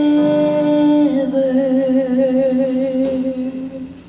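A woman singing a long held note, then stepping down to a lower note sung with a wide, even vibrato that fades out near the end. A sustained Yamaha Motif keyboard chord sits under the voice.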